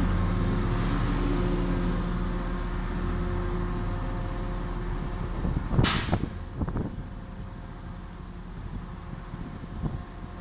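Heavy diesel truck engines running with a steady hum that fades over the first few seconds. A short, sharp air-brake hiss comes about six seconds in, with a smaller hiss just after.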